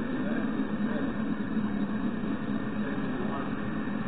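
Tank cars of an oil train rolling past on the rails, a steady wheel-on-rail noise without breaks, heard through a railcam's microphone.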